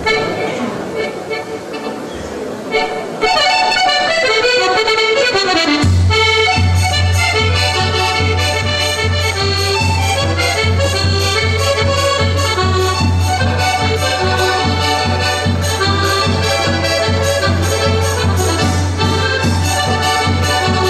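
Piano accordions playing a polka. A few seconds in, an accordion opening run falls in pitch. From about six seconds in the full tune comes in, with a bass line and a steady beat on bass drum and cymbal.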